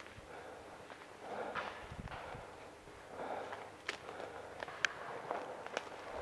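Footsteps of a person walking over the forest floor, brushing through undergrowth at about one step a second, with a few sharp clicks in the second half.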